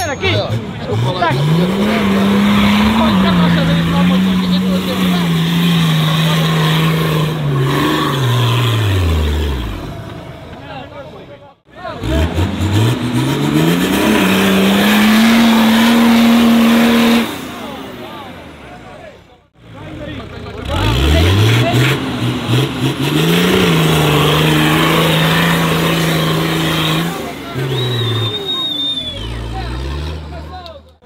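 Diesel engine of a Nissan Patrol 4x4 revved hard and held at high revs while its mud tyres spin for grip in deep mud. The revs climb, hold and fall away three times, with crowd shouts underneath.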